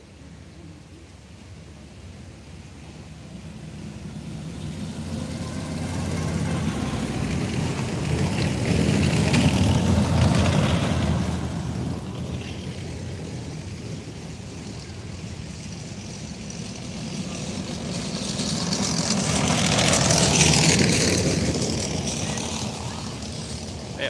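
Military vehicle engines passing along a dirt track, rising to a loud peak about ten seconds in, fading, then rising to a second peak near the end as another pass goes by.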